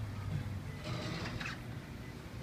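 Schindler RT hydraulic elevator running, a steady low hum from its machinery, with a short burst of higher mechanical noise about a second in.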